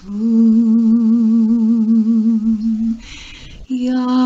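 A solo singing voice holding one long low note with a gentle vibrato, then a short breathy break about three seconds in before the next note begins.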